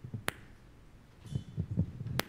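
Microphones and stands being handled: two sharp clicks and a short run of low thumps, with a faint high ring over the thumps.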